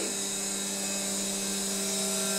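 Wood-chip feed machinery of a biomass boiler running as it works chips toward the boiler: a steady motor hum with a high whine above it.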